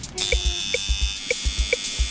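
Tattoo machine starting up just after the start and then buzzing steadily as the needle works, over background music with a steady beat.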